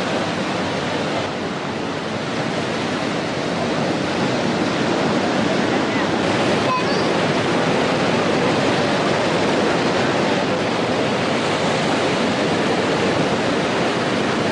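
Surf breaking and washing around in shallow water: a steady rushing noise that grows a little louder about four seconds in.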